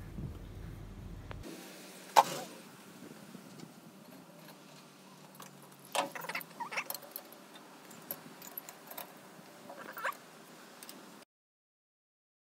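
Scattered clicks and knocks of Coleman Northstar lantern parts being handled and fitted together. The loudest is a single sharp click about two seconds in, with further clusters of small knocks later on.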